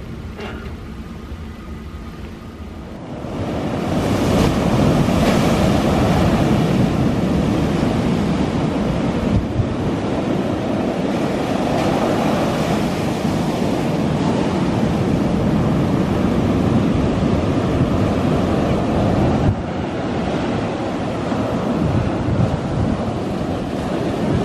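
Ocean surf: waves breaking and washing up onto a beach, a steady rushing noise that comes in about three seconds in and carries on.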